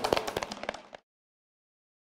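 Small audience applauding with hand claps, cut off suddenly about a second in.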